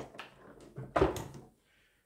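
Hard plastic vacuum floor nozzle and tube adapter being handled: a faint click, then a single sharper knock about a second in as the nozzle is set down.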